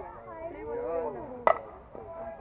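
A softball bat hitting the ball once, a sharp crack about one and a half seconds in, over players' voices.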